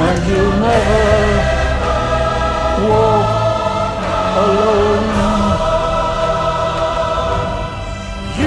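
A large choir singing a slow ballad over instrumental backing, holding long notes. The music dips briefly near the end.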